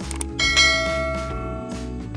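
Cartoon notification-bell sound effect: a short click, then a bell ding about half a second in that rings out and fades over about a second, over background music.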